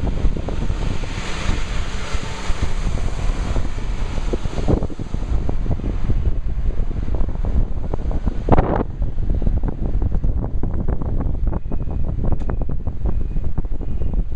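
Wind buffeting the microphone at the window of a moving taxi, over the low rumble of the car and the street traffic around it, with a hiss in the first few seconds and a brief rushing swell about eight and a half seconds in.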